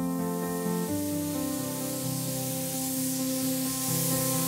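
Slow background music with held notes, over a steady hiss of a gravity-feed paint spray gun spraying.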